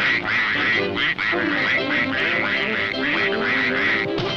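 A cartoon duck's voice quacking in a rapid, sputtering string, about four quacks a second, with the angry, fist-shaking character. An orchestral score plays underneath.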